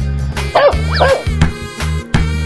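A dog barking twice, about half a second and a second in, over background music with a steady beat.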